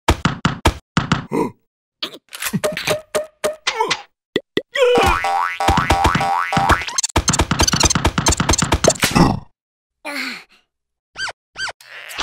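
Cartoon fight sound effects: rapid flurries of punches and thuds as a hanging cocoon is struck like a punching bag, broken by short silent gaps.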